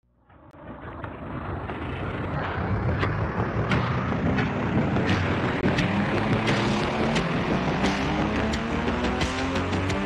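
Intro music fading in from silence over the first two seconds, with a steady beat of sharp strokes about every 0.7 s over a noisy, hiss-like bed.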